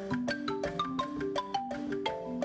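Marimba played by several players at once on one instrument: a quick run of struck wooden-bar notes and chords, each ringing briefly, with percussion hits alongside.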